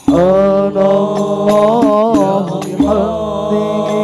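A male voice singing an Al-Banjari sholawat line into a microphone, holding long, ornamented notes that bend and waver, with only a few frame-drum strokes underneath.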